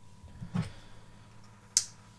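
Quiet handling of a folding knife on a wooden tabletop: a soft low bump about half a second in, then a single sharp click near the end.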